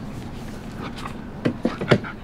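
A German Shepherd's paws stepping up onto a training box: after a steady low background, a few short taps and scuffs come in quick succession about a second and a half in.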